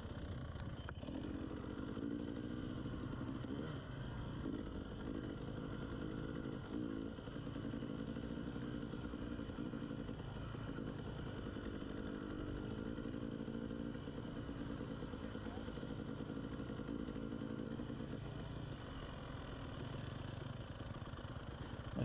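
KTM 300 two-stroke enduro dirt bike running steadily at a low riding speed, heard from on the bike.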